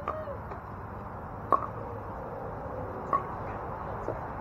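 Pickleball paddles striking a plastic pickleball in a rally: two sharp pocks about a second and a half apart, after a fainter hit at the start.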